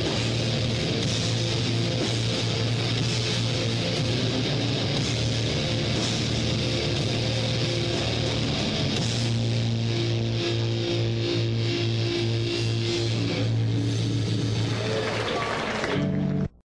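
Live rock band with guitars and bass holding long, sustained chords at a steady, loud level.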